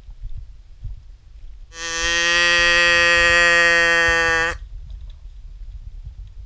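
A zebu cow mooing close by: one long call of nearly three seconds at a steady pitch, starting about two seconds in and cutting off sharply.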